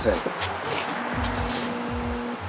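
Resistance spot welder buzzing steadily as it passes current through sheet metal clamped between its copper-arm tongs. The buzz starts about a second in, over a steady noisy hiss.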